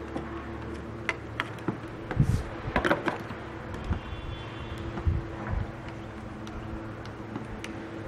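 Scattered small clicks and light knocks of wires and a tool being worked at a small circuit breaker's terminals, with a cluster of clicks about three seconds in and a few low thumps.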